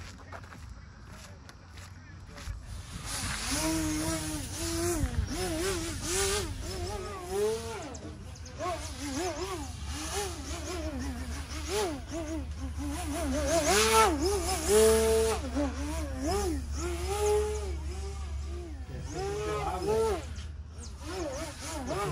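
Engine of an aerobatic radio-controlled model airplane in flight, its pitch rising and falling again and again as the throttle is worked through 3D manoeuvres. It starts about three seconds in.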